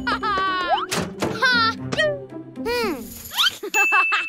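Playful cartoon music with comic sound effects: a run of whistle-like pitch glides, mostly falling, a few knocks, and a sparkly ding near the end.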